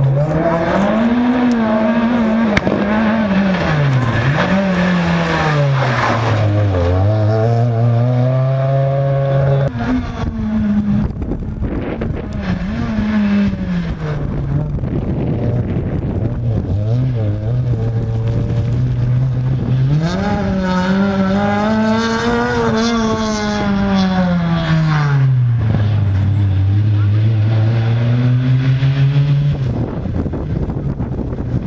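Renault Clio R3 rally car's four-cylinder engine driven hard, its pitch climbing and falling again and again as it accelerates and lifts for bends, with steadier lower stretches between. The biggest climbs come about a second in, around ten seconds in and around twenty-two seconds in.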